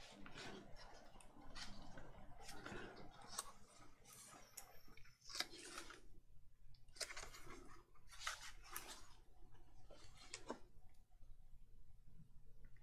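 Faint paper rustling: a sheet of patterned paper is laid onto a glued book page and smoothed down by hand, in a series of short swishes and rubs.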